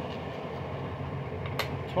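Scratch-off lottery ticket being scratched, a steady rasp of its coating being rubbed away, with a couple of faint clicks near the end.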